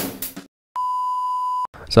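The tail of a drum-kit music intro, then after a brief silence a steady electronic beep at one pitch, lasting about a second and cutting off sharply.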